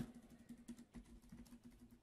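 Faint computer keyboard keystrokes, a few scattered clicks, over near-silent room tone with a faint steady hum.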